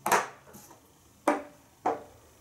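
Dry-erase marker on a whiteboard: three short strokes, each starting sharply and fading quickly.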